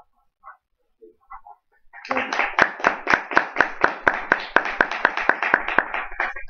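Audience applauding, starting about two seconds in, with one clapper close by clapping about five times a second over the applause of the rest of the room.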